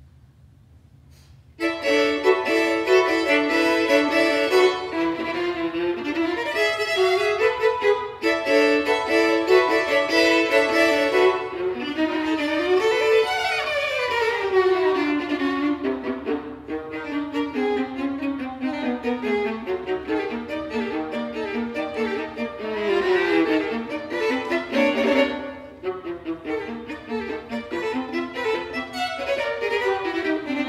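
Violin and viola duo playing classical chamber music, coming in about two seconds in with quick-moving notes. Two long falling runs sweep down through both instruments, one near the middle and one about two-thirds of the way through.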